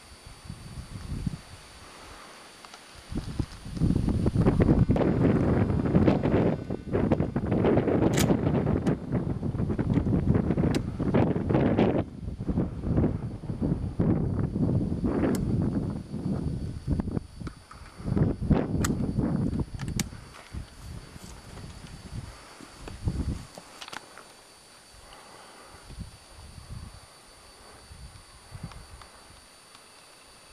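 Close rustling and scuffing noise from movement through dry scrub and rock, loud from about four seconds in to about twenty seconds, with a few sharp clicks, then dying down to scattered faint rustles.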